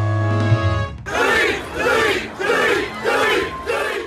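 A music sting ends about a second in. A crowd then shouts a chant in unison, about five shouts, each just over half a second apart.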